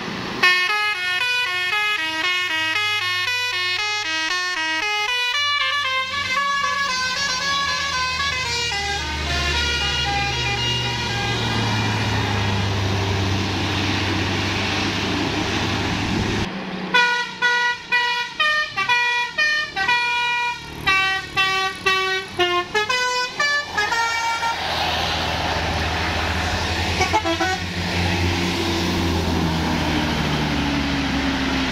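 Tour buses' "telolet" Basuri multi-tone horns playing quick stepping melodies, in two separate runs, the second chopped into short toots. Bus diesel engines run underneath, and one rises in pitch near the end.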